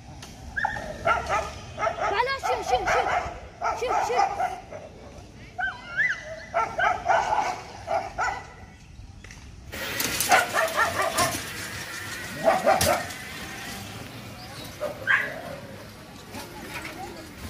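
Several street dogs barking at one another in a squabble, in short repeated bursts that go on for most of the first nine seconds and come back in shorter clusters later.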